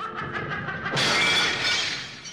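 Animated-film soundtrack: music with a glassy shattering, tinkling sound effect that comes in about a second in and fades near the end.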